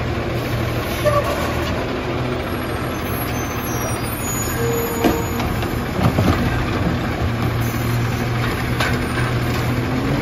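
Diesel garbage truck running as its automated side-loader arm dumps a cart over the hopper and sets it back down, with the engine held steady under the hydraulic load. A few sharp knocks and clanks from the cart and arm stand out: about a second in, and again around five and six seconds.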